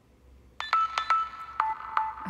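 Rabbit R1 reminder alert going off: a ringtone-like chime of short notes on two alternating pitches, starting about half a second in.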